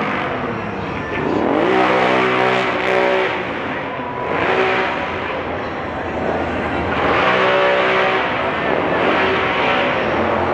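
A vehicle engine in the parade revving repeatedly, its pitch dipping and climbing again about every three to four seconds, with steadier running in between.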